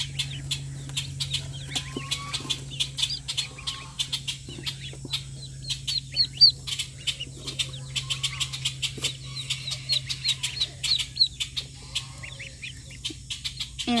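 Day-old Welsh Harlequin ducklings peeping continuously, a dense chatter of many short, high peeps, some sweeping upward, over a steady low hum.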